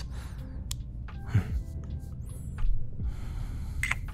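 Soft lo-fi background music, with a few brief close-miked breath sounds over it.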